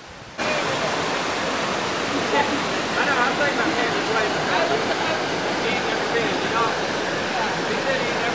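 Steady rushing of river water pouring over a cascade into a swimming hole, cutting in suddenly about half a second in, with faint distant voices over it.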